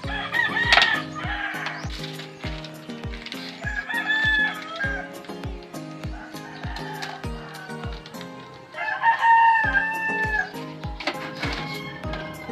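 A rooster crowing three times, a few seconds apart, each crow a long held call, over background music with a steady beat.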